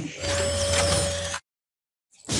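Glitchy electronic sound effects from a logo intro: a dense mechanical-sounding noise with whistle-like gliding tones and a steady tone underneath, cutting off suddenly a little past halfway, followed by silence.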